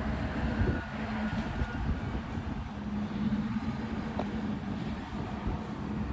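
Steady low engine rumble with a constant hum running through it.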